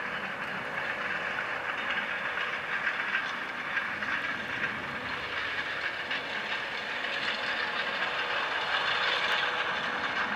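Case Puma 210 tractor running under load, pulling a Kuhn seed drill through dry soil, with a steady engine drone, the rushing and rattling of the drill working the ground. It grows louder as the tractor passes closest, loudest near the end.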